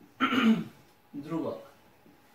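A man's voice in two short bursts about a second apart, the first like a throat clearing, the second a brief vocal sound.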